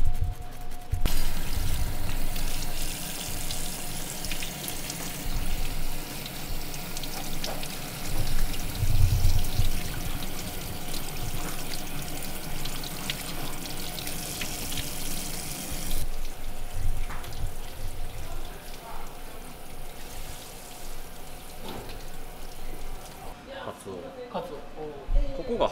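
Water running from a kitchen tap onto a cutting board as a freshly gutted horse mackerel is rinsed under it by hand. The flow starts about a second in and becomes much quieter about two-thirds of the way through.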